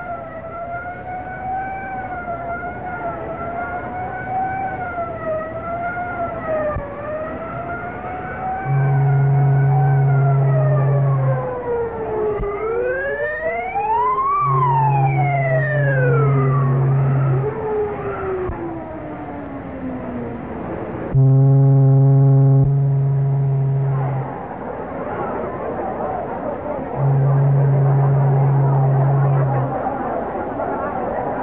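A deep foghorn sounds four long blasts of about three seconds each, roughly every six seconds; the third blast is joined by a higher horn with several tones at once. Under and between the blasts, high whistling tones waver and glide up and down, two of them sweeping past each other mid-way.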